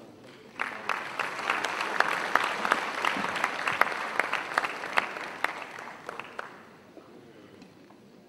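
Audience applauding: the clapping starts suddenly about half a second in, holds for several seconds, then thins out and dies away near the end.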